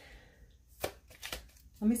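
Tarot cards being handled: one sharp click of card on card a little under a second in, then a few lighter ticks.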